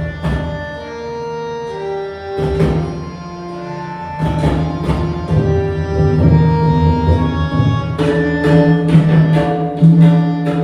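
Several tabla played together over a harmonium melody with a steady low drone. The tabla strokes are sparse for the first few seconds, leaving the held harmonium notes. They come back in about four seconds in and grow dense and loud near the end.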